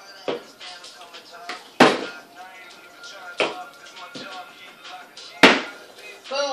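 A partly filled plastic bottle being flipped and knocking down onto a wooden table, five sharp knocks with the two loudest about two seconds in and near the end, the last a landing that stays upright. Faint music and voices run underneath.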